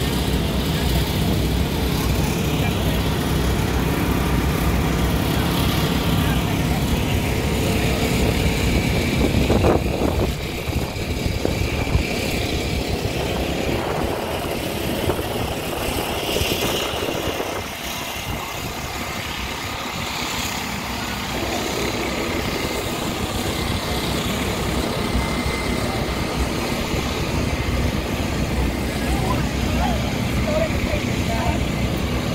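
Steady outdoor rumble with people's voices talking in the background.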